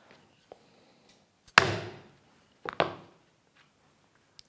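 A steel corner chisel (corner punch) struck twice to chop the rounded corner of a rebate square in walnut: a sharp blow about one and a half seconds in and a second, doubled one about a second later, each with a short ringing tail.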